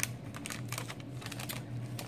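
Light, irregular clicks and taps of hands handling small objects, over a steady low hum.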